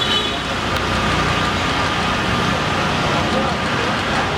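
Steady street traffic noise mixed with indistinct voices.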